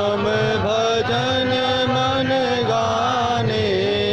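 A man singing a devotional bhajan into a microphone, with long held notes that bend in pitch, over a steady low beat.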